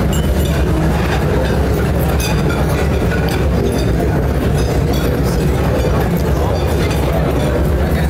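Murmur of many people talking at once in a large banquet hall, with scattered small clinks and clatter, over a steady low hum.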